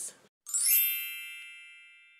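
A single bright, high chime struck about half a second in, ringing with many overtones and fading away slowly. It is an intro title sound effect.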